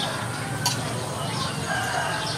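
A rooster crowing in the background, with a single sharp click about two-thirds of a second in.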